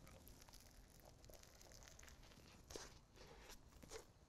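Faint chewing of a mouthful of crispy chicken burger with fried jalapenos: quiet, irregular crunches and clicks, a little louder near three seconds in.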